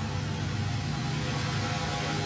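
Steady low drone of a vehicle's engine and road noise, heard from inside the moving vehicle.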